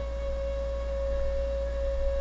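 A steady drone held on one unchanging pitch with a few faint overtones, over a low electrical hum.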